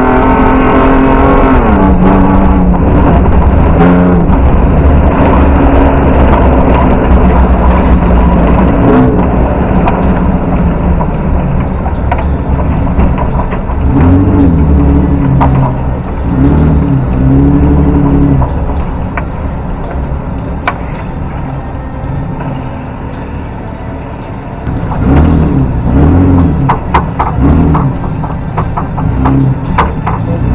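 Rally car engine heard from inside the cabin, running hard at first. As the car slows it revs up and down in a series of rises and falls, with music playing over it.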